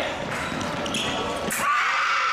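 Quick footsteps thudding on the fencing strip during a sabre exchange. A sharp crack comes about one and a half seconds in, and straight after it a fencer's shout rises at the touch.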